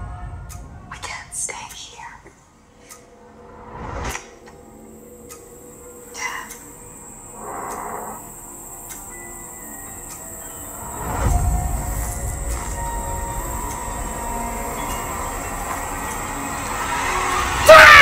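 Horror film trailer soundtrack: a tense, sparse score of low rumbling hits with a high sustained tone, and a few quiet spoken or whispered lines. It swells from about the middle and peaks sharply just before the end.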